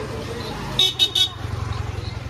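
A vehicle horn gives three quick high-pitched toots about a second in, over the low hum of an engine running.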